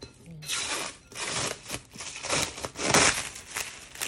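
Clear plastic film crinkling as it is peeled back off a metal basin of bread dough, in uneven bursts that are loudest about three seconds in.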